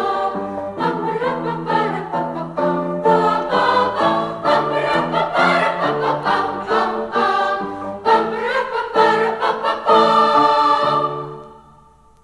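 A choir singing a patriotic piece with many chord changes; the music ends about eleven seconds in and fades away.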